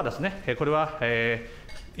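A man speaking at a microphone, with one drawn-out vowel about a second in and a quieter pause near the end.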